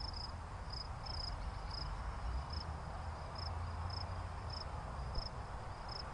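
Short high chirps at one steady pitch, repeating about every half second and sometimes in pairs, like a chirping insect. They sit over a low steady hum in a background ambience.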